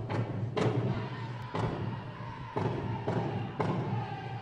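Powwow drum struck in unison by a drum group, with singing over it. The beats come about twice a second at first, then about once a second through the rest.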